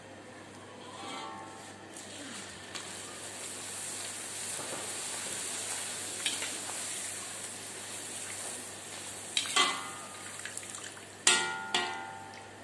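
Paratha dough frying in hot ghee in a steel karahi: a sizzle that swells up a couple of seconds in and holds. Near the end a metal slotted spoon strikes the wok three times with a short ringing clank.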